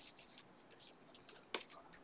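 Very faint handling of trading cards and a clear plastic card holder, with one sharp click about a second and a half in.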